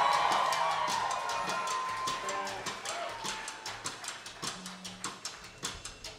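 Live indie rock band starting a song: a loud ringing sound fades away over the first couple of seconds, leaving a quick, steady ticking percussion beat at about three strikes a second.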